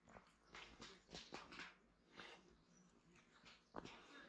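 Faint footsteps on a dry dirt forest trail, a string of short scuffs and crunches at walking pace with one sharper step near the end.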